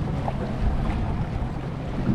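Steady low rumble and wash of a fishing boat at sea, with wind noise on the microphone.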